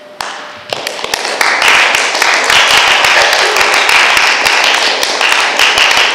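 Audience applauding: a few scattered claps that grow into steady, dense applause within about a second and a half.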